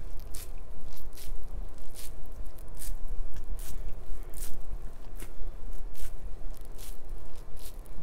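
Cotton square damp with toner water patted repeatedly against the camera, soft squishy taps about one or two a second.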